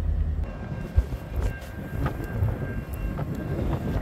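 EMD SD60 diesel locomotives running with a low rumble, with a single sharp knock about a second in.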